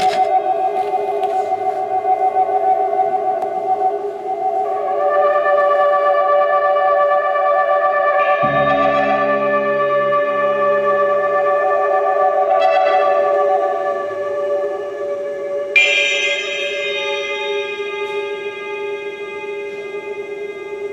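Live improvised music of long, overlapping held tones from trumpet and reed instrument, a slow drone with no pulse. A cluster of low notes sounds from about eight to eleven seconds in, and a brighter high tone enters sharply near sixteen seconds.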